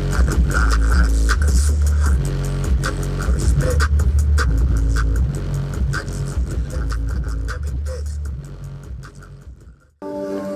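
Bass-heavy music played loud through two American Bass subwoofers in a car trunk, driven by a Cerwin Vega HED 1500 W monoblock amplifier that the meter shows putting out about 320–340 watts into about 2 ohms. Deep bass notes dominate, and the music fades out near the end.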